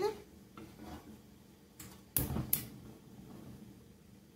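A metal frying pan set down on a stove burner grate: a sudden clank about two seconds in, with a second sharper knock just after, among faint handling sounds.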